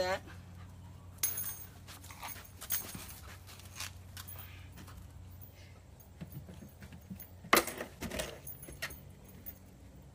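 Labrador puppy moving about close by, with metal jingling from its collar and scattered light clicks and rustles.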